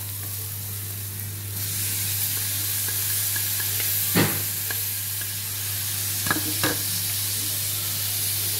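Oil sizzling in an aluminium wok as minced garlic, lemongrass and chili stir-fry and cut straw mushrooms are tipped in; the sizzle grows louder about a second and a half in. A few sharp clacks against the pan, one about halfway and two close together near the end, as the food is stirred with wooden chopsticks.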